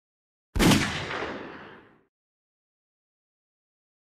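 A single shot of Buffalo Bore 200-grain .45 Colt hollow point fired from a Taurus Judge revolver into ballistic gelatin: one sharp report about half a second in, which rings out and fades over about a second and a half.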